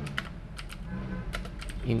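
Computer keyboard typing: a run of irregular key clicks as a line of text is typed.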